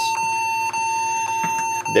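A broken computer that has just been switched on giving out a steady, high-pitched electronic beep, with very short breaks about a second apart: a fault warning from the machine.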